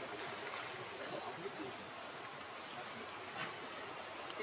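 Steady outdoor background hiss with faint, distant voices now and then.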